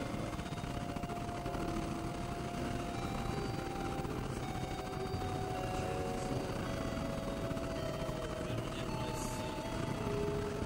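Experimental electronic drone and noise music from synthesizers: a dense, steady rumbling noise bed under several thin sustained tones that come and go and step to new pitches.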